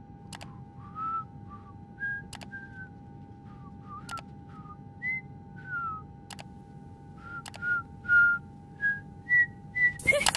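A person whistling an idle tune in short, sliding notes, with a sharp click every second or two and a steady electronic tone underneath.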